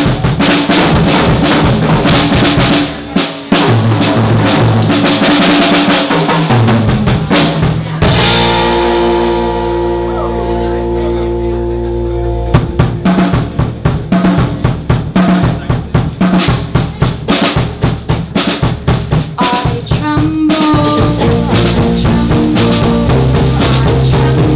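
Live rock band playing: drum kit, electric guitars and bass guitar, with a young female lead vocal. About eight seconds in the band stops on one held, ringing chord for about four seconds, then the drums and the full band come back in.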